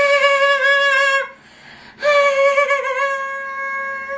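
A woman's voice singing two long, high, held "aaah" notes on about the same pitch, with a short break between them, like a mock heavenly choir.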